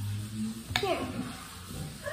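A child's voice saying a single short word, "here", falling in pitch, with a short click just before it.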